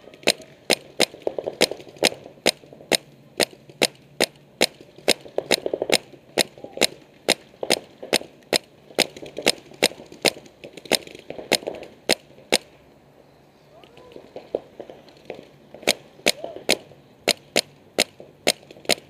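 Paintball markers firing steadily: sharp cracks about three a second, stopping for about three seconds near the end before the shots start again.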